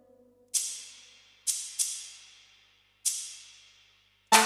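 Sparse percussion in an electronic track: four cymbal crashes, one about half a second in, two close together near the middle, and one about three seconds in. Each rings out and fades over about a second, with near silence between them.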